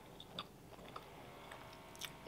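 A few faint, sparse crackles of flaky croissant pastry being pulled apart by hand.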